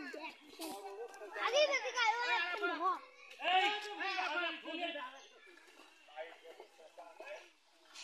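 Children's voices calling out, two loud high-pitched calls in the first half, then quieter talk.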